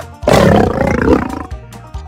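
A lion's roar sound effect: one loud, rough roar that starts about a quarter second in and dies away over about a second, over background music.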